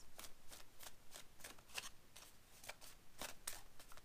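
A deck of oracle cards being shuffled by hand: soft, quick card-on-card taps, about four a second.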